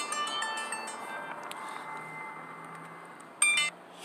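Bell-like chime tones: several pitches struck together at the start that ring out and fade over about a second, then a shorter, louder chime a little after three seconds.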